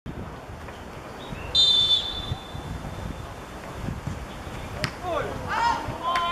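Referee's whistle blown once, a short high blast about one and a half seconds in, stopping play for a free kick. Players shout near the end.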